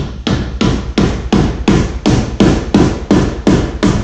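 Mallet tapping a plastic end cap onto the end of a metal roof-rack cross bar: about a dozen quick, even strikes, roughly three a second.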